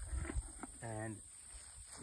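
A few light knocks and handling bumps as the plastic lid of a tipping bucket rain gauge is lifted off and set down.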